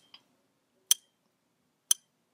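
Clock ticking, one short sharp tick a second, with silence between the ticks.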